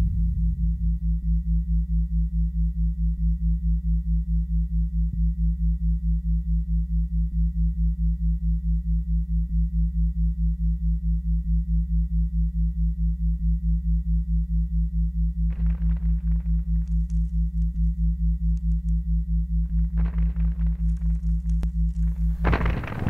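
A low, steady hum that pulses evenly about four times a second. Brief soft noises sound over it in the last third.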